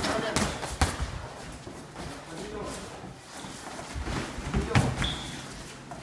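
Boxing gloves landing punches in sparring: two sharp thuds near the start, and another burst of hits a little before five seconds in.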